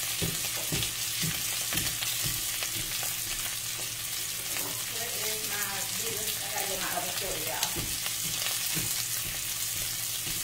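A steak searing in butter and pan juices in a cast-iron skillet, sizzling steadily with small crackling pops.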